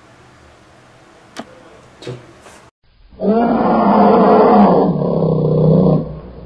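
Faint background with a few soft clicks, then after a short break a loud, drawn-out animal roar of about three seconds begins about three seconds in.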